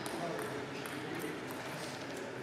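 Indistinct voices echoing in a large sports hall, with a few faint clicks of table tennis balls.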